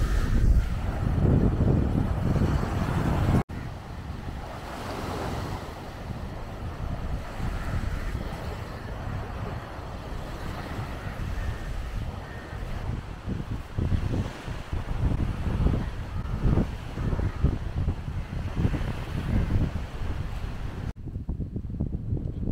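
Wind buffeting the microphone over small waves washing onto a sandy shore, with gusts coming and going. The level drops suddenly at a cut about three and a half seconds in.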